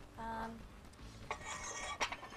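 Metal clinking and rattling of a short barbell with small weight plates being handled, starting a little past halfway, mixed with a few spoken words.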